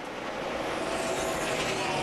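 A pack of NASCAR stock cars running at full speed, their V8 engines making a steady, dense engine noise with a faint held pitch in the middle.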